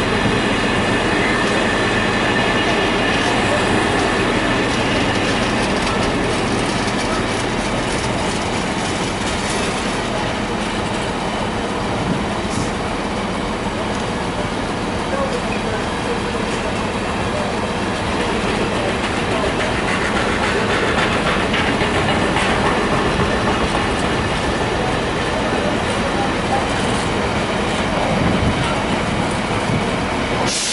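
Container flat wagons of a long intermodal freight train rolling steadily past, a continuous rumble and clatter of wheels on the rails.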